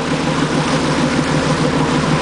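A small boat's motor running steadily under way, with the rush of water from its wake.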